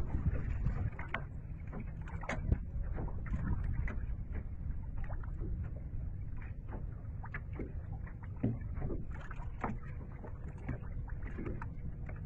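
Small waves lapping and slapping against a small boat's hull in irregular splashes, over a steady low wind rumble on the microphone.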